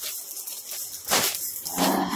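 A clear plastic zip bag rustling and crinkling in a few short bursts as it is handled, with a brief vocal sound near the end.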